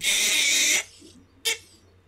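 A man's stifled laugh: one loud breathy burst just under a second long, followed by a short faint click about a second and a half in.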